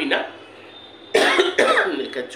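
A woman coughs once, sharply, about a second in, after a brief lull in her talk, and then goes on speaking.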